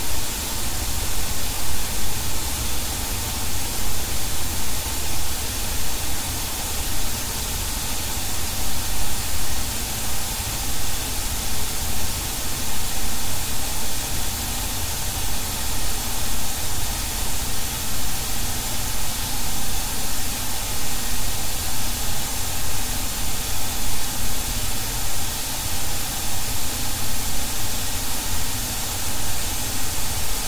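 Dense, full-range static-like noise from an experimental electronic track, with a level that swells and dips irregularly.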